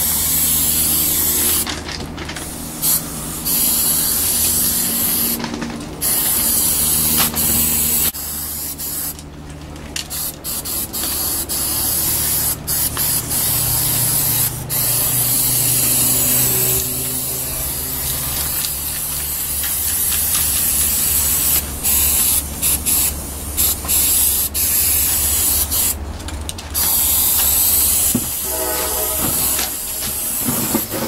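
Aerosol spray paint cans hissing in bursts of varying length, with short breaks between them, as two cans are sprayed at once. A steady low hum runs underneath.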